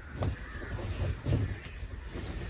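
A crow cawing about three times, the last call the loudest.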